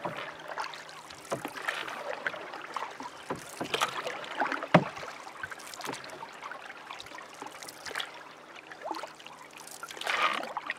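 Canoe paddling on open water: paddle strokes and water splashing and lapping against the hull, with one sharper hit about halfway through and a faint steady hum underneath.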